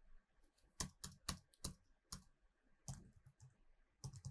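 Faint keystrokes on a computer keyboard: a handful of separate, unevenly spaced key clicks as a terminal command is typed.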